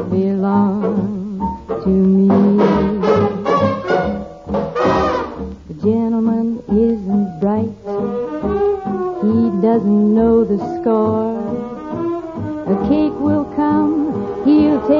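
A 1940s studio dance orchestra plays an instrumental passage of a ballad, with the brass section prominent in held notes and chords. It is an old broadcast recording with a dull, cut-off top end.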